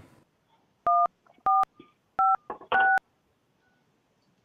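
Four touch-tone (DTMF) keypresses on a phone line, each a short two-tone beep, about 0.6 s apart with the last held a little longer, as the caller is put on hold.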